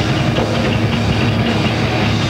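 A thrash metal band playing loud and continuous, with distorted electric guitar held over drums, recorded on a VHS camcorder.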